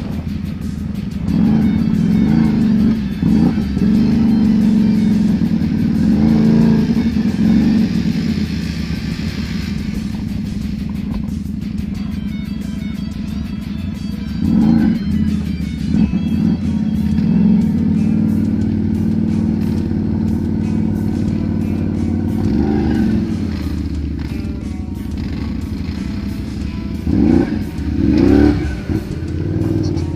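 Can-Am 570 XMR ATV engine running and revving up and down repeatedly while riding a muddy, flooded trail, with the hardest revs near the end.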